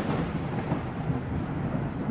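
Thunder sound effect: a long, rolling rumble slowly dying away.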